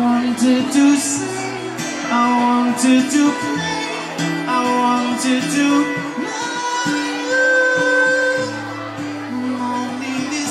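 Live acoustic guitar and electric guitar playing a song together, with a man singing into a microphone.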